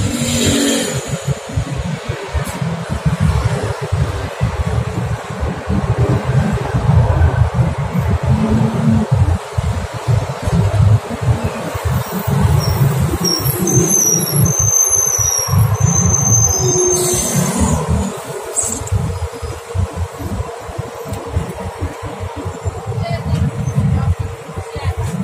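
Outdoor street noise on a phone microphone: a loud, choppy low rumble of wind buffeting the mic, with city traffic under it.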